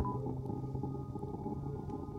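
Quiet electronic drone: a low hum with several faint, held higher tones. A steady high beep cuts off just after the start.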